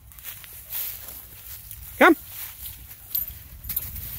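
Footsteps rustling through dry leaf litter in woodland, with a few light clicks near the end. About two seconds in comes one short, loud call with a rise and fall.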